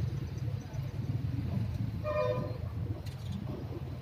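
A short vehicle horn toot about two seconds in, over a steady low rumble.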